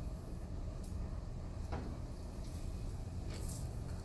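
A few faint knocks and scrapes from hands working the gas cylinder valve on a flash point tester, over a low steady hum.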